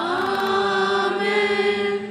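Sung liturgical chant: one long note held steadily, with a constant low drone beneath it.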